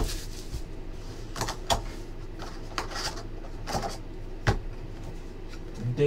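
A hard cardboard trading-card box being handled and its lid worked off on a table: scattered scrapes and a few sharp knocks, the loudest about four and a half seconds in, over a steady low hum.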